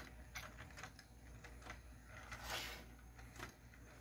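Faint, irregular clicking and tapping from a small 3D-printed four-legged walking toy, driven by a 3-volt 30 RPM N20 gear motor, as its plastic linkages work and its feet step on the desk. A brief soft rustle a little past halfway.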